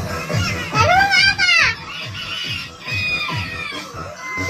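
Dance music with a steady beat, with children's voices over it, including one loud, high shout about a second in.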